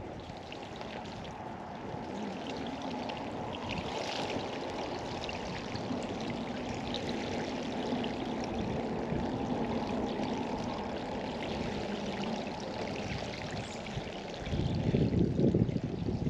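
Bicycle tyres rolling through shallow standing water on a flooded path, a steady splashing swish. Near the end a louder rumble of wind on the microphone comes in as the bike rolls out onto the wet concrete.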